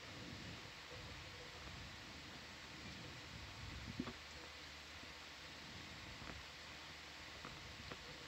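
Faint steady background hiss with a low hum, and a single brief click about four seconds in.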